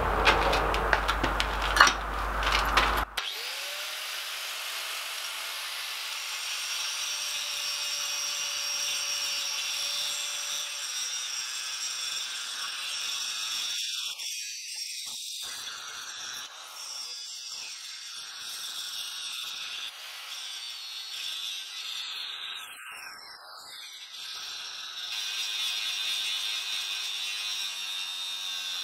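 Angle grinder grinding surplus weld flat on a steel plate welded to an anvil: a steady high-pitched whine with the rasp of the disc on steel, dipping briefly a few times as the pressure eases. Louder knocks and rustles come in the first three seconds before the grinding starts.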